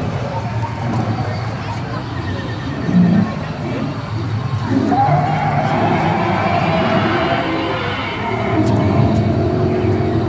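Indistinct voices over a steady mix of background sound.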